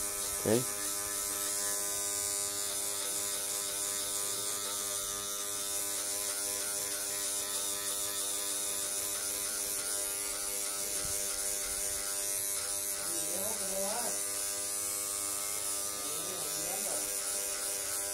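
Electric hair clipper with a No. 2 guide comb, lever closed, running with a steady hum while it cuts through short hair, blending out the line left by the No. 1 guard in a fade.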